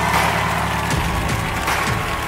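Studio audience applauding over the backing music as it holds its final chord.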